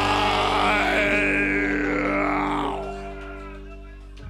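A live punk band's last chord held on electric guitar and bass guitar, ringing out steadily with a noisy wash over it. It fades over the last second or so.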